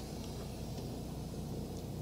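Semi truck's diesel engine idling, a steady low rumble heard from inside the cab.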